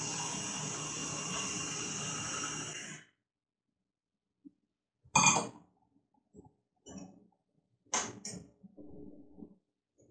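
Kitchen tap water running into a glass as it is filled, a steady rush that stops suddenly about three seconds in. A few short, fainter sounds follow later, likely the glass being handled and set down on the counter.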